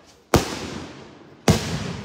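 Daytime aerial fireworks shells bursting overhead: two sharp bangs a little over a second apart, each trailing off in a fading rumble.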